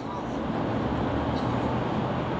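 Steady low rumble of street traffic in a pause between spoken sentences.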